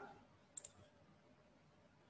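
Two quick, faint clicks close together about half a second in, typical of a computer mouse button, against near silence.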